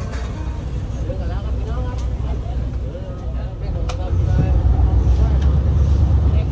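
Low, steady rumble of a boat engine, which grows louder about four seconds in, with people talking indistinctly over it during the first few seconds.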